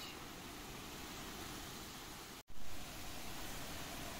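Steady hiss of typhoon rain and wind, with no distinct events. About two and a half seconds in the sound cuts out for an instant, then comes back a little louder for the rest.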